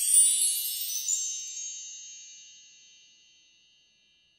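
High-pitched shimmering chime sound effect of a logo sting, many bell-like tones ringing together and fading away over about three seconds.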